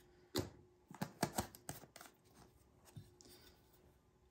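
A handful of light knocks and clicks as a small plastic mica jar and a coated tumbler are picked up and handled on a craft table. Most of them fall in the first two seconds, with fainter taps after.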